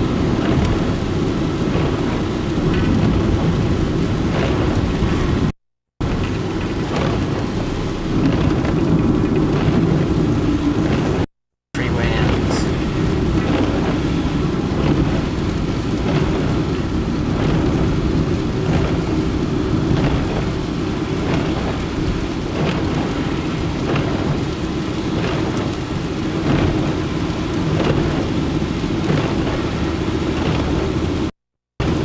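Cabin noise of a car driving on a wet highway in the rain: a steady low rumble of tyres and wind, with rain ticking on the windshield and the wiper sweeping. The sound cuts out briefly twice, about six and eleven seconds in.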